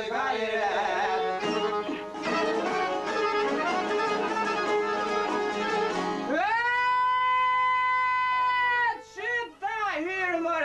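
Albanian folk song with plucked and bowed string accompaniment and a singing voice. About six seconds in, one long steady note is held for nearly three seconds, then ornamented, wavering melody lines resume.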